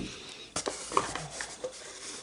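A stack of Magic: The Gathering cards is set down on a cloth playmat, and a cardboard box is shifted: a few light knocks and clicks over soft rustling.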